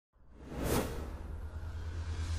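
Broadcast intro sound effect: a whoosh that rises out of silence and peaks just under a second in, over a steady deep rumble.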